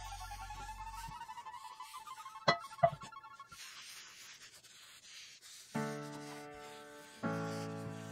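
Paper towel rubbing over the freshly oiled surface of a cast iron skillet, wiping off the excess oil before seasoning. The rubbing is faint, with two light clicks about two and a half seconds in. Background acoustic guitar music comes in a little past halfway.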